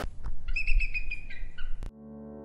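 A high, whistle-like chirping call of several quick notes lasting about a second, dropping in pitch near the end, followed by a sharp click.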